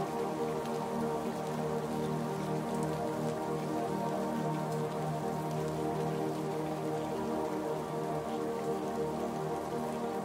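Slow ambient music of long, held chords, with a steady patter of rain mixed underneath. The level stays even, with no change.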